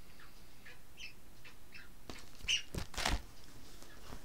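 Faint short chirps, bird-like, recurring several times, and a brief louder rustle with a knock near three seconds in as a plastic-sleeved chart booklet is handled and put down.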